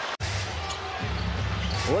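A basketball being dribbled on a hardwood court over steady arena crowd noise. The sound drops out for an instant at an edit cut a fifth of a second in, and the crowd rumble grows heavier from about a second in.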